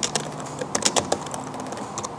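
Typing on a computer keyboard: irregular key clicks, with a quick flurry of keystrokes just before the one-second mark.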